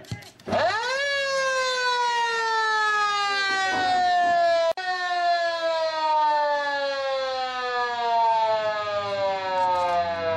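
Australian football ground siren winding up quickly about half a second in, then sounding one long, loud tone that slowly falls in pitch.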